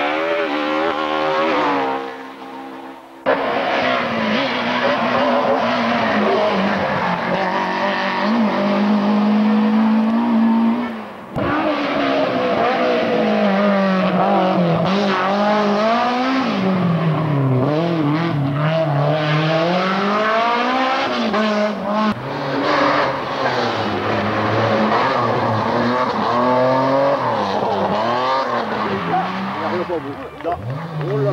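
Rally car engines at full throttle, revving up and falling back again and again through gear changes as the cars drive the stage; the first is a BMW E30 M3. The sound drops briefly and comes back suddenly twice, once early and once about a third of the way in, where the footage cuts between cars.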